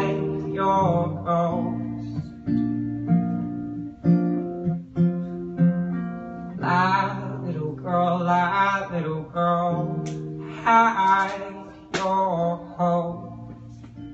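Steel-string acoustic guitar played live, with a man's voice singing over it in stretches.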